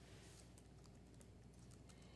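Faint fingertip taps typing on an iPad's on-screen keyboard: a few light clicks over near silence.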